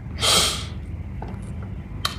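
A man's single sharp, noisy intake of breath, about a quarter second in, as he weeps.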